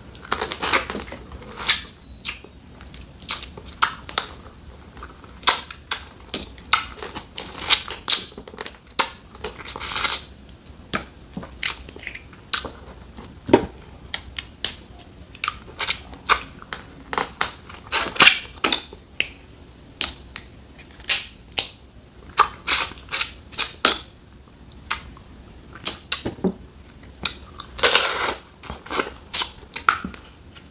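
Close-miked eating of boiled snow crab legs by hand: frequent short, sharp cracks and snaps of crab shell mixed with wet sucking and smacking mouth sounds, with a few longer slurps as meat is sucked from the shells.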